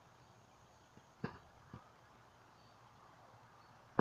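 Quiet outdoor background with a short click a little over a second in and a fainter one about half a second later.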